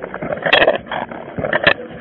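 Walking noise picked up by a police officer's body-worn camera: the camera rubbing against the uniform and gear rattling with each step, with sharp knocks about half a second in and again near the end.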